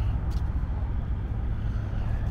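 Steady low rumble of outdoor city noise, the kind made by road traffic, with no distinct events.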